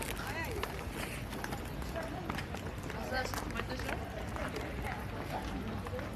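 Steady street background noise with faint, scattered voices of people nearby.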